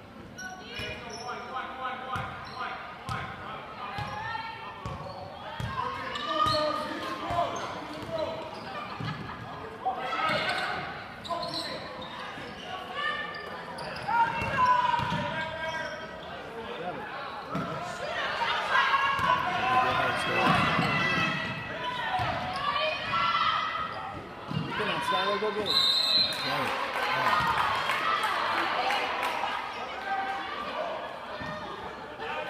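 A basketball bouncing on a hardwood gym floor during play, amid players' and spectators' voices in a reverberant gymnasium.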